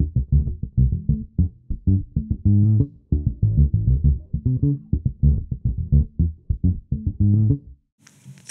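Fodera Monarch Standard P four-string electric bass with an Aguilar P-style pickup, plucked with the fingers in a quick run of short notes, its tone knob turned all the way off so the sound is dark, with no treble. The playing stops just before the end.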